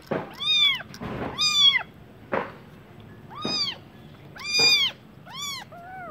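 Young kittens meowing during bottle feeding: about five short, high-pitched meows that rise and fall, with a few short noisy bursts between the first ones.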